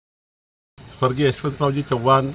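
Silence, then about three-quarters of a second in a steady, high-pitched chorus of night crickets starts up, with a man's voice starting to speak over it.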